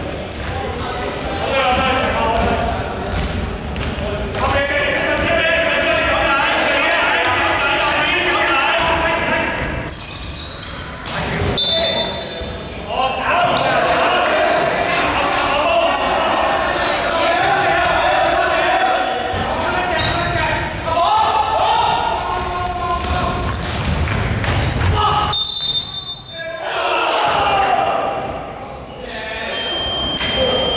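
A basketball bouncing on a wooden court, with people talking and calling out through most of it, all echoing in a large sports hall.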